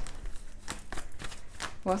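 A deck of tarot cards being shuffled by hand: a quick, irregular run of soft card clicks and slides.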